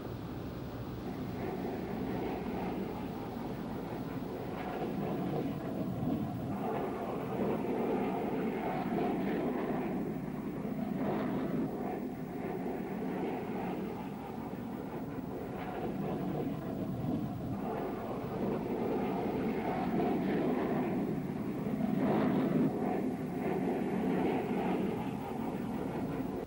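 Steady jet aircraft noise from an F-111's twin turbofan engines, a rumble that swells and eases a little.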